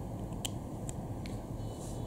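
A few faint clicks as a USB cable's plug is pulled out of a small power bank's port and the cable is handled, over a steady low room hiss.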